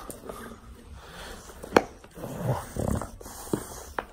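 English bulldog tugging on a toy ball clamped in his jaws, with breathing noises and mouth sounds on the toy. A sharp click comes about a second and three-quarters in, and smaller ones follow later.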